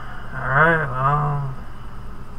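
A man's short wordless vocal sound in two parts, rising then falling in pitch like a hummed "mm-hm", over a steady low background hum.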